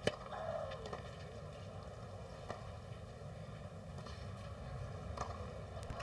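Tennis racket striking the ball on a serve, a single sharp crack at the very start, followed by a few fainter ball strikes of the rally over a quiet crowd background.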